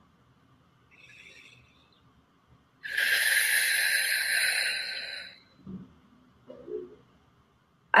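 A person breathing out long and hard close to the microphone, a hiss of about two and a half seconds that fades away, after a faint shorter breath about a second in.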